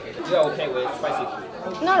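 Speech only: a person talking, over a background of other voices chattering.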